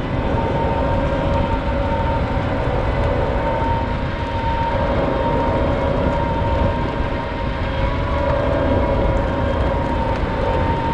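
PistenBully 600 snow groomer running steadily under load as it pushes snow with its front blade: a dense diesel engine drone with a steady high whine on top.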